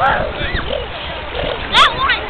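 Children's voices calling out over water splashing and the low rush of wind and waves, with a short, loud, high-pitched shriek near the end.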